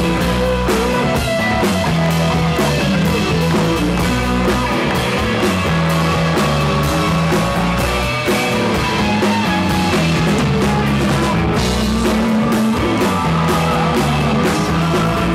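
Live rock band playing an instrumental break, electric guitar over bass and drum kit, with a steady beat and no vocals.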